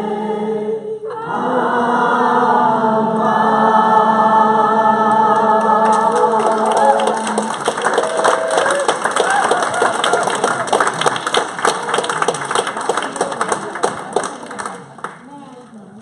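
A room of people singing a wordless nigun together in long held notes, breaking off about a second in and coming back in until the last chord ends around seven seconds in. Then the group breaks into hand clapping that dies away near the end.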